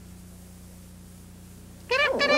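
A steady low electrical hum on the taped broadcast during a blank gap between commercials. Right at the end, a loud high held call with a stack of steady overtones begins.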